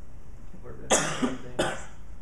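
A person coughing twice, the first cough louder, over a steady room hum.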